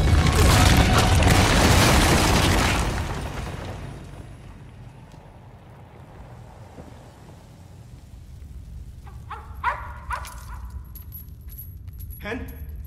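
A loud, low rumbling crash of collapsing concrete debris that dies away over about three seconds. Near the end, a few short high yaps from a small dog.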